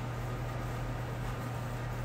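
A steady low machine hum with an even hiss behind it, unchanging throughout.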